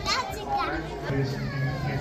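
Children's high voices calling out in the first second, then a man's voice chanting on a steady held note in a church service.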